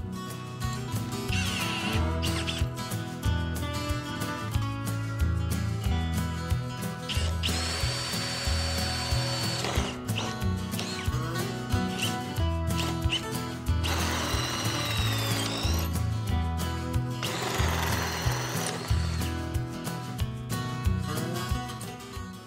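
Cordless drill running a two-inch hole saw through 3-inch PVC pipe, in three cutting runs of a few seconds each, the middle one with a whine that rises and falls. Background music with a steady beat plays throughout.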